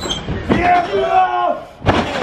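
Spectators shouting, then just before the end a single loud slam as a wrestler's body crashes onto the wrestling ring mat.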